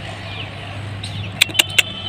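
Steady low outdoor background hum, with three quick sharp clicks close together about one and a half seconds in.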